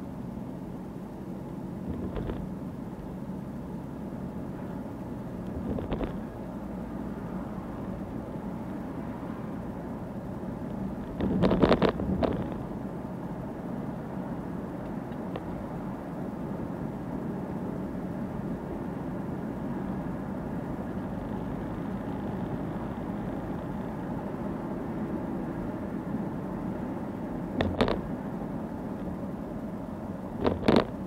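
Car driving along a city road, heard from inside the cabin: a steady engine and tyre rumble, with a few short knocks and a louder burst of knocks about eleven to twelve seconds in.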